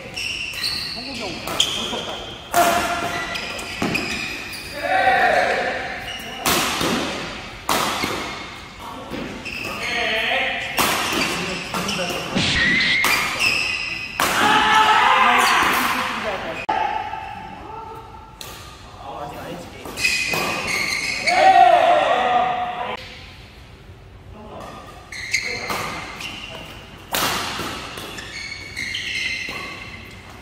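Badminton doubles rallies: rackets crack sharply against the shuttlecock at irregular intervals, mixed with shoes squeaking on the court mats, echoing in a large hall.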